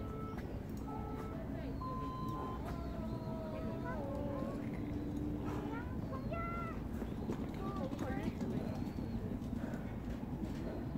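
Faint voices, with short bending calls, over a steady outdoor background noise.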